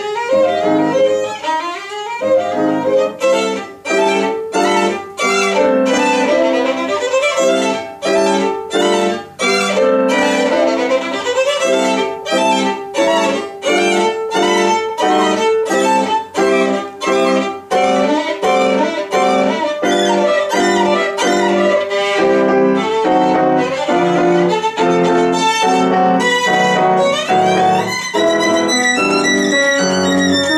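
Solo violin playing a fast classical passage with grand piano accompaniment, many quick separate notes, and a rising run near the end.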